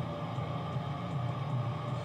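Steady low hum of room background noise, with no other event.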